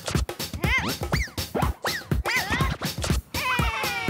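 Upbeat children's-show jingle with a steady beat, overlaid with several short cartoon-like pitched sounds that each rise and fall. Near the end, a long falling glide drops in pitch.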